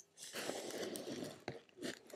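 Plastic pocket pages of a trading-card binder rustling and crinkling as a page is turned, with a couple of light clicks near the end.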